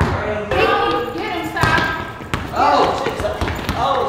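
Basketball being dribbled on a concrete court floor, a series of sharp bounces under voices talking and calling out.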